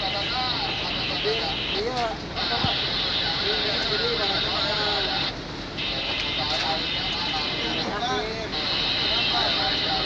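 Several people talking in the background over a steady high-pitched hiss that drops out briefly three times, about two, five and a half and eight seconds in.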